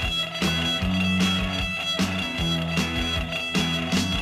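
Instrumental break of a 1980s Spanish rock song: electric guitar playing over bass and a steady drum beat, with no vocals.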